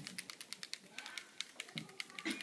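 Faint, rapid light clicking or tapping, several clicks a second, with a brief voice near the end.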